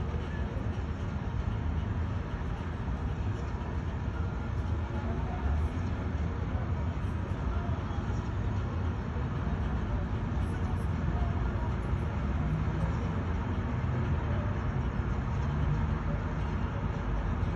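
Steady low rumble of city street traffic, an even noise with no single event standing out.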